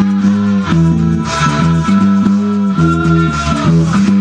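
Electric bass guitar playing a riff of low, quickly changing notes along with a rock recording's electric guitars, with no singing.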